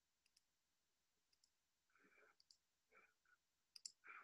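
Near silence with faint clicks in pairs, about once a second, and a few soft muffled sounds in the second half.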